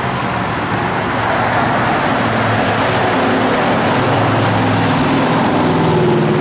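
A motor vehicle engine running steadily with traffic-like road noise, swelling over the first couple of seconds and then holding.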